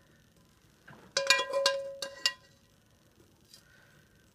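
A metal spoon clinking against cookware in a quick run of sharp strikes about a second in, each leaving a brief ringing tone.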